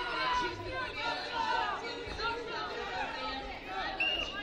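Many voices talking and calling out over each other from spectators in a large sports hall during a full-contact karate bout.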